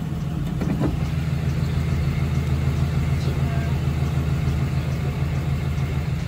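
A vehicle engine idling: a steady low hum that holds even throughout.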